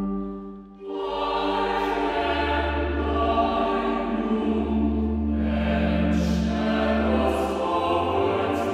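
Mixed four-part choir singing a Renaissance metrical psalm setting in sustained chords. A phrase fades out a little before a second in, then the choir starts the next line.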